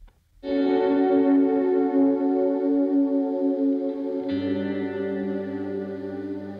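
Instrumental song intro: a sustained guitar chord washed in chorus and echo starts abruptly about half a second in and holds. A deep bass note comes in with a chord change a little after four seconds.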